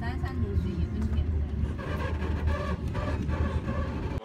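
Steady low rumble of a moving passenger train heard from inside the carriage, with people's voices talking over it in the second half.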